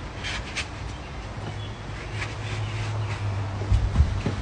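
Footsteps in slide sandals and dogs' paws on a deck: faint scattered clicks and scuffs over a low steady hum, with a thump near the end.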